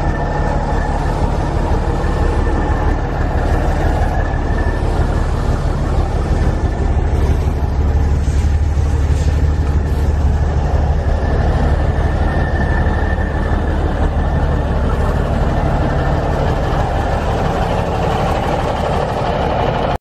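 Cummins diesel engine of a 1977 Ford 9000 truck idling steadily, a little louder about halfway through.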